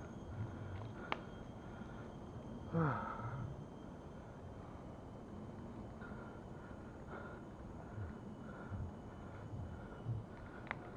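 Heavy breathing of a cyclist straining on an uphill climb, with puffs of breath roughly every second and a louder falling groan about three seconds in. A single sharp click about a second in.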